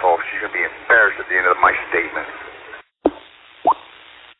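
A man talking over a two-metre FM amateur radio repeater channel. The speech stops near three seconds in, the audio drops out briefly, then comes a click, faint hiss, and a short rising blip near the end as the transmission ends.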